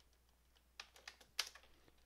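Computer keyboard keystrokes: a quick run of about six faint key clicks in the second half, one sharper than the rest.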